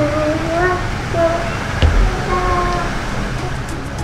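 A voice singing a melody in held, gliding notes over a steady low rumble, with a single short knock about two seconds in.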